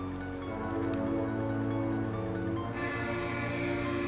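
Quiz-show background music of held, sustained chords under the clue, with a new, higher chord coming in about two-thirds of the way through.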